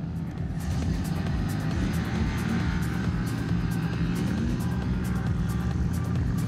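Music with a steady beat over the steady drone of an engine running, its pitch drifting up and down a little.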